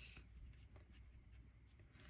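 Faint scratching of a pen writing.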